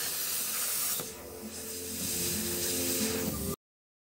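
Plasma cutter cutting sheet steel, a steady hiss of the arc and air jet, easing briefly about a second in. All sound cuts off abruptly at about three and a half seconds.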